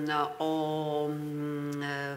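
A woman's voice holding a long, drawn-out 'o...' at one steady pitch, a hesitation sound while she searches for the next name, with a brief break about a quarter second in.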